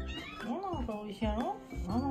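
A domestic cat meowing three times in quick succession, each call rising and then falling in pitch, over background music.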